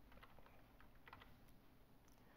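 Near silence with a few faint clicks in two short clusters, from the computer drawing setup (stylus or input device) being used to move around the digital whiteboard.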